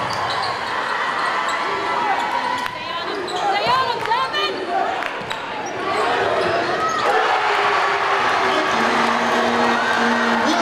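Basketball dribbled on a hardwood gym floor during play, with players and spectators calling out around it.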